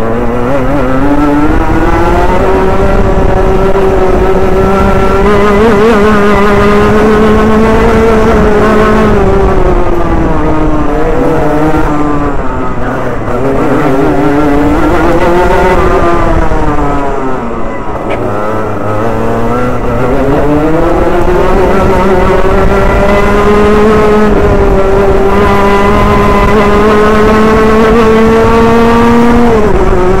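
Rotax Junior Max 125cc single-cylinder two-stroke kart engine, heard close from the kart itself, revving up and holding high revs along the straights, dropping off and climbing again through the corners in the middle, then falling sharply near the end as the driver lifts.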